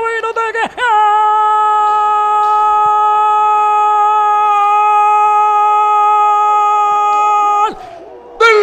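Spanish-language football commentator's goal call: a few short cries, then a long drawn-out "goool" held at one steady pitch from about a second in until it cuts off near the end, announcing a goal just scored.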